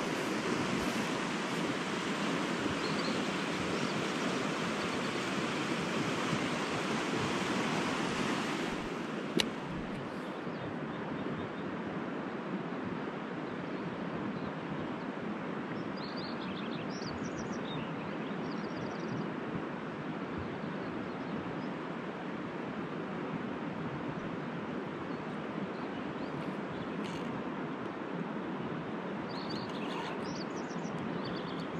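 Rushing river water, a steady rush that drops and softens about nine seconds in, with a single click at the change. Short bird chirps come through over the softer rush in the second half.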